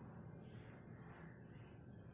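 Near silence: a faint, steady background hum.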